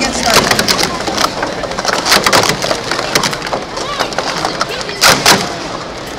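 Hard plastic speed-stacking cups clattering quickly as they are stacked up and brought down on a mat, with two louder clacks near the end.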